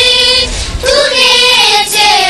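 A high voice singing two long held notes as part of a song; the first note ends about half a second in, and the second starts just before one second in.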